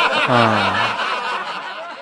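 A person laughing in a drawn-out, quavering chuckle that fades away over about two seconds.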